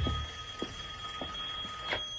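A mobile phone ringing with a steady, high electronic ringtone.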